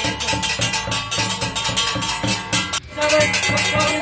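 Hand-held brass plates struck with sticks in a fast, steady beat, each stroke leaving a metallic ring. This is the ritual drumming of Nepali dhami-jhakri shamans. There is a brief break in the beat near three seconds in.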